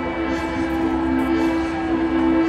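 Live band music: a sustained chord held steady, with bass underneath.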